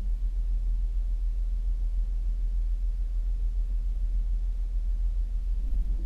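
Diesel engine of a Kenworth W900L truck idling, heard inside the cab as a steady low rumble.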